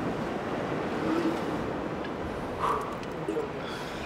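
Steady wash of ocean surf and wind, with a few faint voices.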